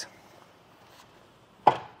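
Kuat Piston Pro X hitch bike rack being folded up to its stowed position. One sharp click near the end as it locks into place.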